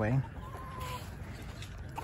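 A chicken calling once, faintly: a short thin note lasting about half a second, over quiet yard background.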